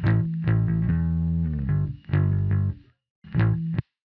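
Bass guitar track playing back: a few low plucked notes, then a brief dead-silent pause and one more short phrase that stops before the end. Noise reduction at 40% cuts the buzz out of the pauses between notes.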